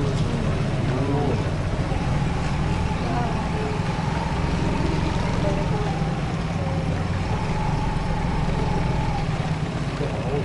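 Small sappa boat's outboard motor running steadily at low speed, an even engine drone that holds unchanged throughout.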